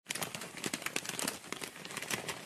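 Plastic courier mailer bag crinkling and rustling as gloved hands work a cardboard toy box out of it, a dense crackle throughout.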